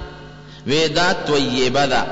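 A man's voice in a melodic, chant-like recitation, starting after a short pause about two-thirds of a second in.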